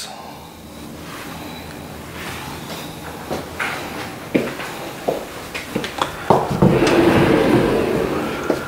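Scattered soft knocks and handling noise, then a closet door being opened with a longer scraping rub near the end.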